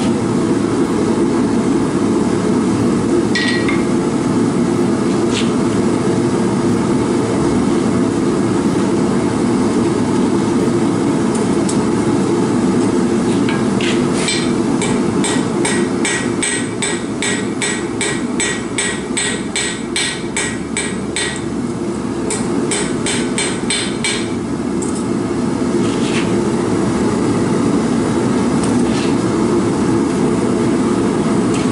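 Gas forge burner running steadily while a hammer strikes red-hot stainless steel wire on an anvil, flattening it. A few single blows, then a fast run of about three blows a second for several seconds past the middle, a shorter run after it, and a couple of single blows near the end.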